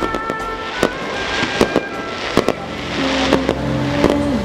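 Aerial fireworks shells bursting: a run of about ten sharp bangs, some in quick pairs, with music playing underneath.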